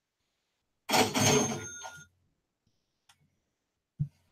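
A trading software's alert sound effect: a single short burst with ringing tones, starting about a second in and fading out within a second, followed by a faint click.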